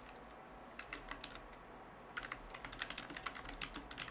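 Typing on a computer keyboard, faint: a few keystrokes about a second in, then a quick run of keystrokes from about halfway.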